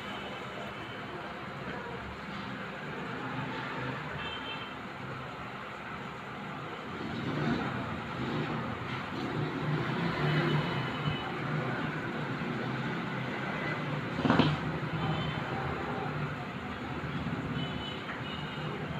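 Steady background noise, with a low hum growing louder about seven seconds in, and one sharp knock about fourteen seconds in.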